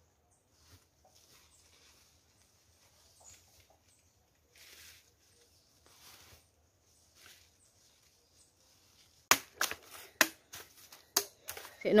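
Faint rustling of a plastic bag and dry leaves. About nine seconds in, a quick run of loud, sharp cracks and snaps from sugar cane stalks.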